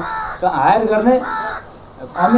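A man speaking in Nepali into a microphone, his voice breaking off about a second and a half in.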